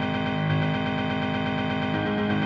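Computer-played piano repeating one low note very fast and evenly, like a machine-gun chug, over held notes: a piano arrangement of a metal riff.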